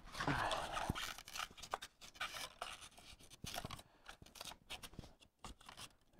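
Scraps of expanded polystyrene foam scraping and rubbing against the foam wall and an electrical box as they are pushed into the gap to wedge the box square. It comes as faint, irregular scratches and small clicks, a little louder in the first second.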